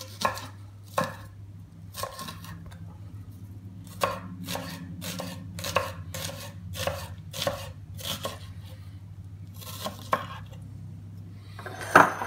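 Large kitchen knife slicing an onion on a wooden cutting board: a series of cuts, each ending in a knock of the blade on the board. The cuts come in runs with short pauses between, quickest in the middle at about two or three a second.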